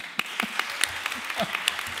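Audience applauding: many hands clapping densely together, with a brief voice heard through it.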